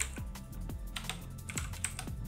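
Computer keyboard keys being typed in a quick run of separate clicks as a terminal command is entered. Electronic background music with a steady beat, about two beats a second, runs underneath.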